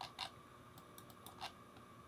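A few faint, sharp clicks of a computer mouse, spaced irregularly, as brush strokes are dabbed onto a Photoshop layer mask.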